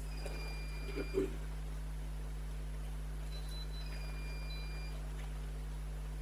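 Steady low electrical hum on the sound system, with a faint high whistling tone twice, each held about a second, and a couple of soft knocks about a second in.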